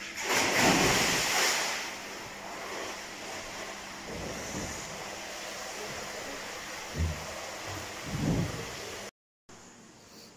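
A person diving headfirst into a swimming pool: a loud splash about half a second in, then steady water noise as he swims.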